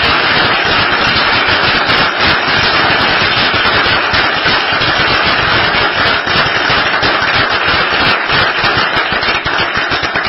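A roomful of people applauding: a loud, steady, dense clatter of many hands clapping.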